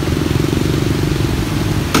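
A motorbike engine running close by with a steady low hum.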